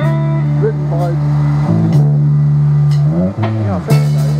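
Live rock band playing an instrumental passage: electric lead guitar with bent notes over a loud held bass note and drums. The bass slides down and back up about half a second before the end.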